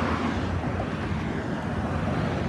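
Street traffic noise: a steady low rumble of cars passing on the road.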